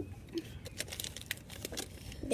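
Crinkling of a chocolate bar's wrapper being handled and pulled open: a run of quick, irregular crackles.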